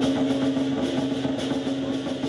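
Lion dance percussion, drum with cymbals and gong, sounding as one steady, droning din with a held low ringing tone and no break.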